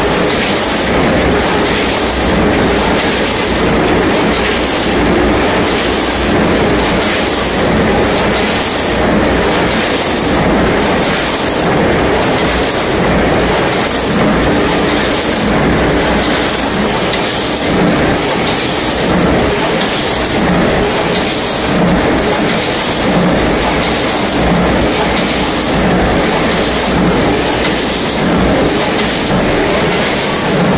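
Rotary pre-made-pouch packaging machine running while it fills pouches with rice cakes: a dense steady mechanical noise with a regular beat about once a second as the carousel indexes.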